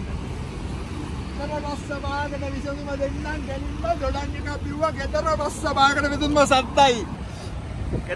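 Road traffic passing, a steady low rumble of cars, under a man talking.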